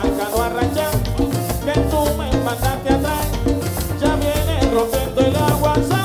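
A live Latin dance orchestra playing a salsa-style number, with a driving bass and percussion and an even, quick high percussion beat running through it.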